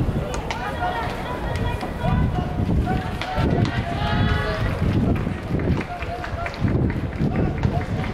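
People talking nearby, several voices overlapping, over the steady background noise of an open-air stadium.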